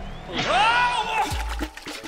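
A cartoon character's short rising yell, about half a second in, over background music, followed by a low thud.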